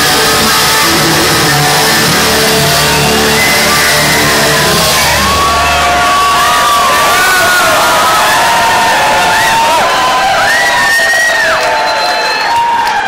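Live rock band's last chord ringing out with bass and electric guitar. About five seconds in the band stops, and the concert crowd carries on loudly cheering, shouting and whooping.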